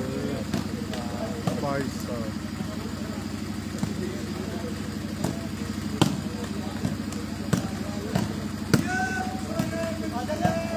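Shooting volleyball in play: a few sharp smacks of the ball being struck, the loudest about six seconds in and others about a second and a half and nearly three seconds later. Shouts from players and onlookers come and go over a steady low hum.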